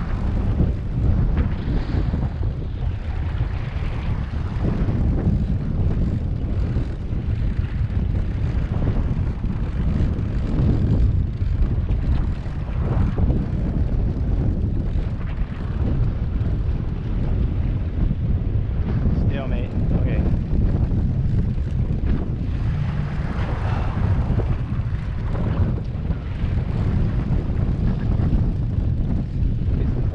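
Twin Suzuki outboard motors running steadily under way, a constant low rumble, with wind buffeting the microphone and water rushing past the stern.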